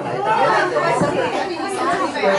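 Several people talking at once: overlapping group chatter, no single voice standing out.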